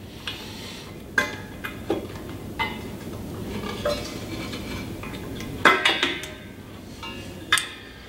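Metal fittings clicking and clinking as a quick-connect refrigerant hose coupler is fitted onto the tank adapter of a refrigerant cylinder: a handful of short, sharp clicks at uneven intervals, the loudest cluster about six seconds in.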